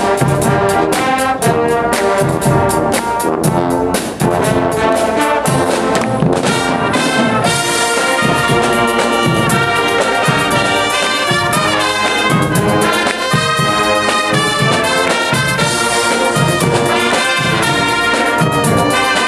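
A live brass band of trumpets, trombones and sousaphones playing with marching drums. Rapid drum strokes drive the first few seconds, then the brass moves into longer held chords.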